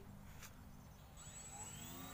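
RC model glider's propeller motor whirring faintly overhead, a high whine coming in after about a second and rising in pitch near the end as the motor speeds up. A single sharp click about half a second in.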